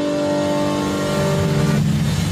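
Opening theme music of a TV programme: held chords, with a low swelling rush rising over the second half and the higher notes breaking off just before the end.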